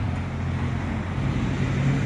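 Cars driving through a road junction: a steady low engine hum with tyre noise, growing a little louder in the second half.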